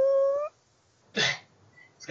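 A man's drawn-out "umm" hesitation hum, held and rising slightly in pitch for about half a second. A short breathy sound follows about a second later.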